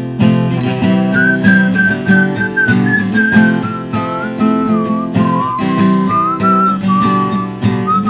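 Acoustic guitar strummed in a steady rhythm, with a whistled melody over it: one pure, thin line that climbs higher in the first half and falls back later.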